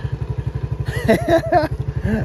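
ATV engine idling steadily, its rapid firing pulses running evenly throughout. A man's voice breaks in briefly about a second in.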